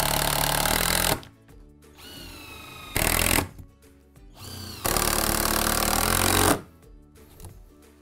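Cordless impact driver driving screws into timber noggins in three runs: a rapid hammering rattle for about a second at the start, a short burst about three seconds in, and a longer burst of about a second and a half from about five seconds in. Between runs the motor whines faintly as it winds up and down.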